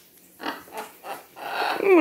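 Blue-and-gold macaw making a string of short, raspy, throaty sounds that grow louder toward the end, where speech-like sounds begin.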